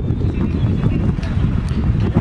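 Wind buffeting the camera microphone with a steady rumble, over faint voices and a few light knocks in the second half.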